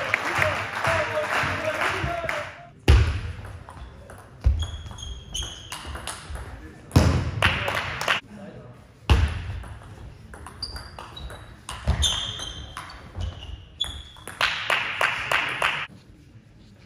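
A shout and quick clapping after a point ends. Then, in a large hall, the table tennis match sits between rallies: several dull thuds and short high squeaks of shoes on the sports floor.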